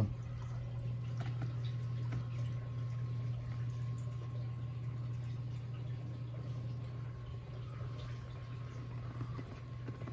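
Saltwater reef aquarium running: a steady low hum with the sound of moving water underneath, steady throughout.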